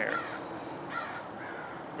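Faint bird calls: two short calls about half a second apart, over steady outdoor background noise.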